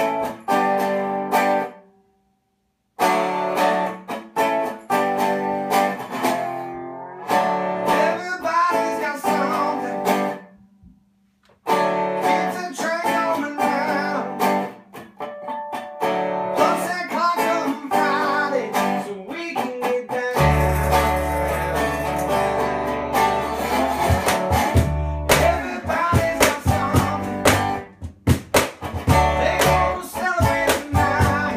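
Acoustic blues-style song on a resonator guitar, with a man singing. The guitar stops dead for about a second twice in the first eleven seconds, and deep upright-bass notes join about two-thirds of the way through.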